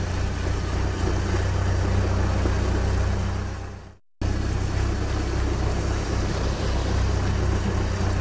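Truck engine running steadily with a low hum. It fades out about four seconds in, and after a brief silence a similar engine sound starts again.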